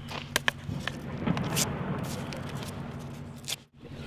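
Handling noise as a cardboard firework tube is set upright on grass: rustling and scraping with a few sharp clicks in the first second and a half. The sound drops out briefly near the end.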